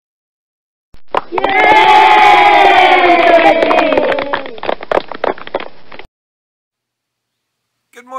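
Several voices shouting or cheering together, their pitch slowly falling, with sharp claps or slaps through it. It starts about a second in, lasts about five seconds and cuts off suddenly.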